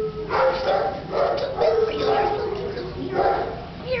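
Small chihuahua yipping and whining in a string of short calls.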